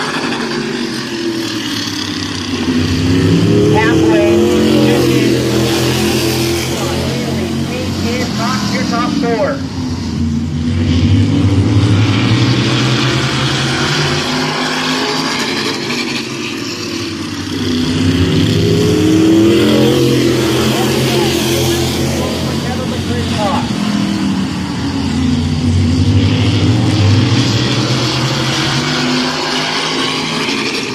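A pack of E-mod (modified) race cars running laps at speed. The engine notes swell, dip and rise again as the cars come past, about every seven seconds.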